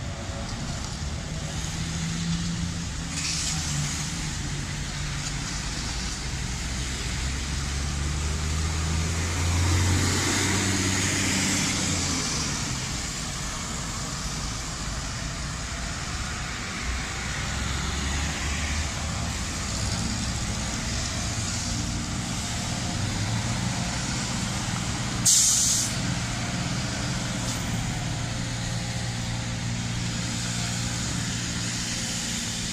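Truck engine running steadily on a wet street, swelling louder for a few seconds about a third of the way through, over a steady wash of road noise. Near the end comes one short, sharp hiss of released air, typical of a truck's air brakes.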